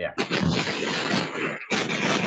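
Loud crackling noise from a just-opened microphone on an online call, a dense steady hiss that breaks off briefly about one and a half seconds in and then resumes.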